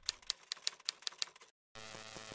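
Typewriter key-click sound effect, about eight quick clicks at roughly five a second, that stops about a second and a half in. After a short silence a steady electronic buzz sets in.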